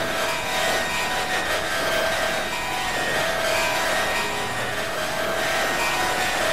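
Experimental electronic noise music from synthesizers: a dense, grainy wash of noise with short held tones at a few pitches that keep coming and going.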